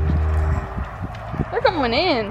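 Two horses nosing and eating cake from a handheld baking pan, their muzzles knocking against the pan in a few sharp knocks. Background music cuts off within the first second, and a drawn-out voice with rising and falling pitch starts near the end.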